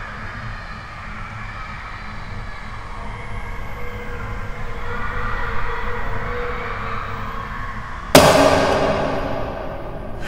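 Horror-film sound design: a dark, noisy drone swells slowly louder, then a loud sudden hit lands about eight seconds in and rings out, fading over a second or two.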